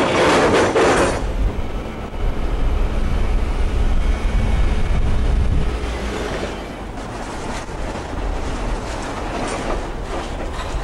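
Excavator bucket scraping through and dumping loose cooled lava rubble, a loud crunching rush in the first second, followed by the machine's diesel engine rumbling low and heavy. The rumble eases off a little after about six seconds.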